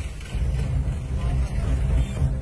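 Road traffic noise, with vehicle engines running and people's voices mixed in.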